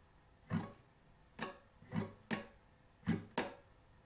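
Steel-string acoustic guitar, capoed at the fourth fret, strummed slowly: six separate down and up strokes on a held chord, each dying away quickly, the last two close together. This is a strumming pattern played super slow.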